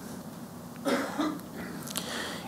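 A person's short throat-clearing cough about a second in, followed by a fainter second one, over quiet room tone.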